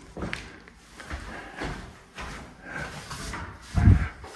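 Quiet rustling and handling noises as the camera is moved about, with one louder low thump just before the end.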